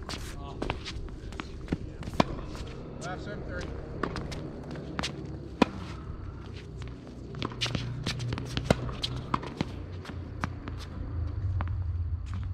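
Tennis rally on a hard court: sharp pops of the ball off racket strings and ball bounces, several seconds apart, with footsteps and shoe scuffs between the shots.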